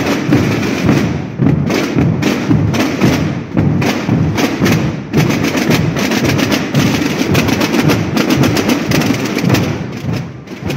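A massed procession drum band of tambores (slung side drums) and bombos (bass drums) playing together: a loud, dense rhythm of rapid stick strokes over deep beats, with no break.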